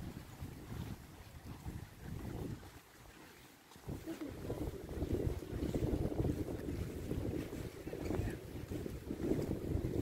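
Wind on the microphone, a gusty rumble that eases off about three seconds in and comes back stronger a second later.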